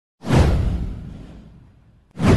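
Whoosh sound effect with a deep low rumble under it. It swells in sharply just after the start and fades away over about a second and a half.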